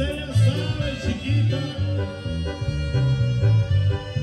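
Live regional Mexican dance music, with a bouncing bass line under steady melody instruments and a wavering voice singing over it in the first couple of seconds.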